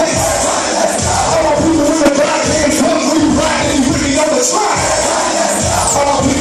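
Hip hop backing track played loud through a PA system in a crowded room, with a steady beat and crowd noise over it.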